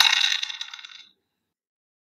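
Classroomscreen dice widget playing its dice-roll sound effect: a short clattering rattle of dice that lasts about a second and fades out.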